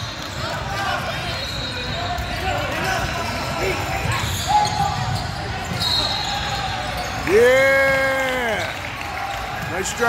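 Basketball game in a large echoing gym: a ball dribbled on the hardwood, brief sneaker squeaks and a steady murmur of spectators. About seven seconds in, someone lets out one loud, drawn-out shout.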